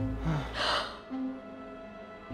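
An older woman gasps once, a short breathy intake of surprise about half a second in. Soft background music with held notes plays under it.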